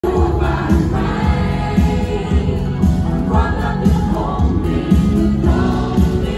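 Live band music: a woman singing lead into a microphone over a band, with a steady drum and bass beat.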